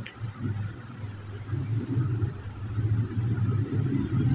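A steady low rumbling hum with no speech over it.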